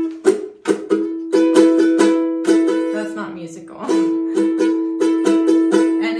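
Spruce-top pineapple tenor ukulele strummed over and over on an E major chord, the strings ringing on between the strokes.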